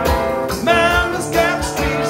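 Live rock song: a singer's voice, with bending sung notes, over a strummed electric guitar and a steady low beat.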